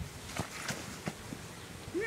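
A few faint, short thuds on a grass lawn: a football hitting the ground and a person falling down onto the grass.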